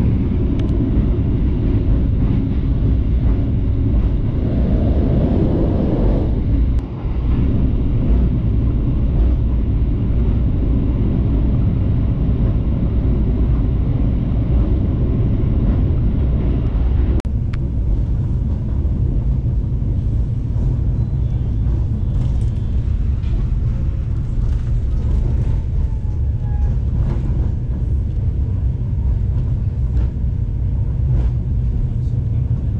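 Steady low rumble of a moving passenger train heard from inside the coach: wheels running on the rails and the coach's running noise, with a brief dip about seven seconds in.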